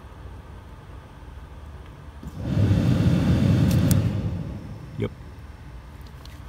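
A 2006 Hummer H3's HVAC blower motor spins up with a rush of air about two and a half seconds in when its wire is grounded directly, runs for about two seconds, then winds down. It runs, so the motor is good and the no-fan fault lies in the blower resistor or its burnt connector.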